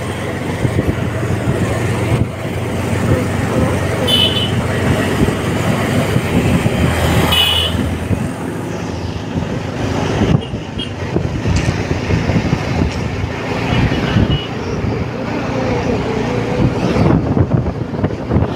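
Road vehicle running along a street, heard from on board with its engine rumble, tyre and traffic noise and wind on the microphone. Two short, high horn toots come about four and seven seconds in.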